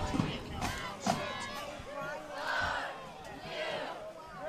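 Football crowd cheering and shouting after a tackle, with a few separate bursts of voices calling out.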